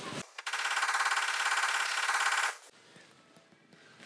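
A rapid, fast-repeating mechanical rattle lasting about two seconds that starts and stops abruptly, followed by near silence.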